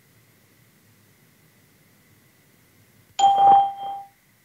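Microsoft Teams test-call chime: a single electronic ding about three seconds in, lasting under a second, marking the end of recording before the recorded message plays back. The first three seconds are very quiet.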